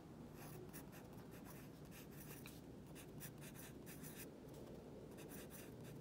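Faint scratching of a pen writing on a paper worksheet, in many short, irregular strokes.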